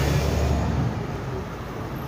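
Road traffic going by: a passing vehicle's low engine rumble that fades away about a second in, leaving a steadier hum of traffic.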